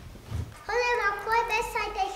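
A child's voice singing in short, level, evenly paced notes, starting about two-thirds of a second in after a soft low thump.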